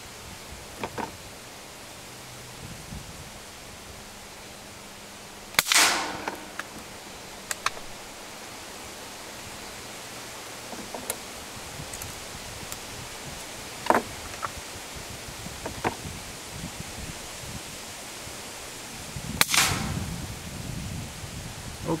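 A home-built caseless .22 rifle firing at a target: two sharp reports, each with a short echo, about fourteen seconds apart. Between them come smaller clicks from the action as it is reloaded.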